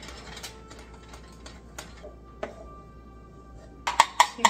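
A spoon stirring flour into stiff cookie dough in a glass bowl, with scattered clicks and scrapes against the glass and a sharper knock near the end.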